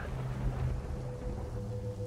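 Low, steady rumbling drone, with a faint high held tone coming in about a second in: a dark ambient underscore.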